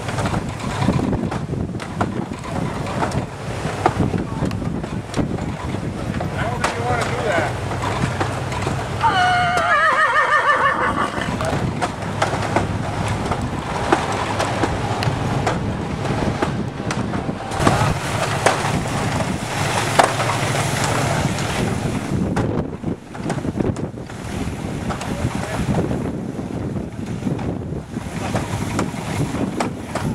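Horse-powered inclined treadmill driving a small grain separator: a steady mechanical rumble with a low hum and a run of small knocks, with wind on the microphone and people talking.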